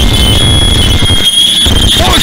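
Harsh noise electronics: a steady, high-pitched squeal over a dense, distorted low rumble, the rumble cutting out briefly a little past a second in.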